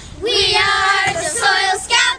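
A group of children singing together in unison, holding one long note and then a shorter one.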